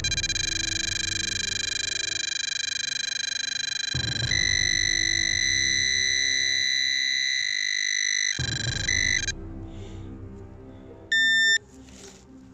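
Handheld metal-detecting pinpointer sounding a continuous electronic tone as its probe is held against a clump of dug soil, signalling metal inside the clump. The tone steps up in pitch about four seconds in, shifts again and stops a little after eight seconds, and one short beep follows near the end.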